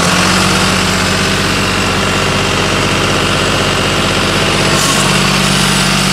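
John Deere 5310 tractor's three-cylinder diesel engine running at a steady speed, a loud even drone with no change in pitch.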